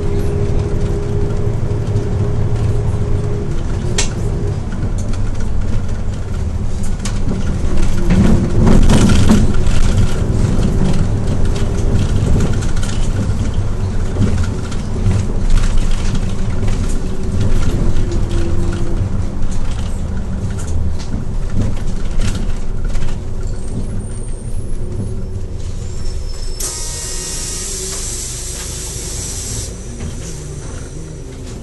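A Hyundai New Super Aero City bus heard from inside the cabin: engine and road noise while it drives, easing off toward the end as it slows to a stop. Near the end comes a hiss of air from the air brakes lasting about three seconds.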